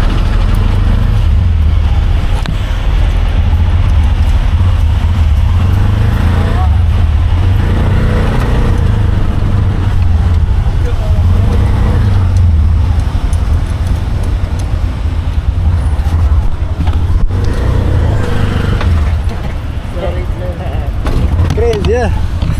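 Auto-rickshaw (tuk-tuk) running through traffic, heard from inside its open passenger cabin: a steady, heavy low rumble of its small engine and the road, with wind on the microphone.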